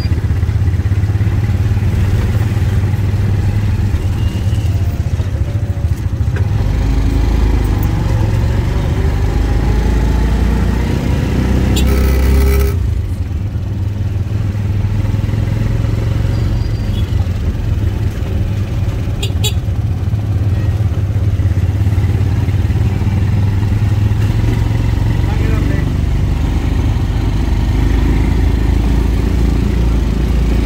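Tuk-tuk (auto-rickshaw) engine running as it drives, with a steady low drone. Its pitch rises between about six and twelve seconds in, then drops suddenly just before halfway.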